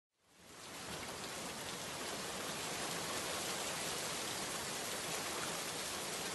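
Steady rain sound effect, an even wash of noise that fades in over the first second.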